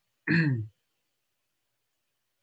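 A man clears his throat once, briefly, about a quarter of a second in.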